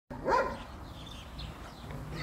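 Belgian Malinois dog giving one short, high-pitched yelp near the start, followed by a few faint, thin whimpering sounds.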